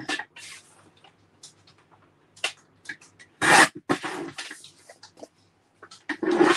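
Cardstock being slid and cut on a paper trimmer: short scratchy rasps of card and blade, the loudest about three and a half seconds in, with a second just after and light taps and scrapes between.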